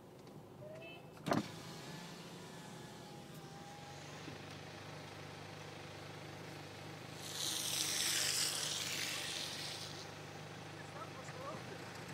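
Car cabin noise while driving on a wet road: a steady low drone, with a single sharp click about a second in and a hiss of tyres on the wet road that swells and fades for about two seconds in the second half.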